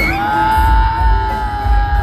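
A woman singing one long high held note through a concert PA, over a pop backing track with a heavy bass beat.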